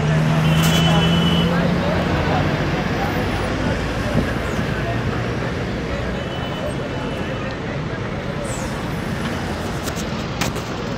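Steady road and traffic noise of a vehicle moving along a highway, with a low engine hum that is strongest in the first couple of seconds.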